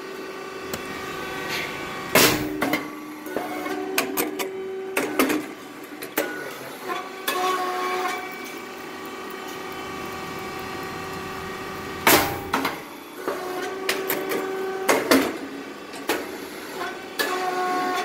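Rice cake puffing machine running through its press cycle: a steady machine hum with a loud pop about two seconds in and again about twelve seconds in, as the heated moulds release the puffed red rice cakes. Smaller clicks and knocks from the press come between the pops.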